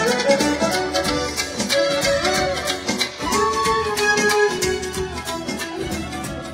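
A live Romanian manele band playing an instrumental: a high lead melody over a steady beat from a large drum struck with a beater.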